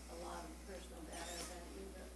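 A faint, distant voice speaking off-microphone: an audience member asking a question. A steady low hum sits underneath.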